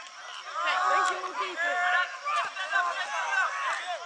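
Several people shouting at once, overlapping and unintelligible: players and spectators calling out during a rugby ruck.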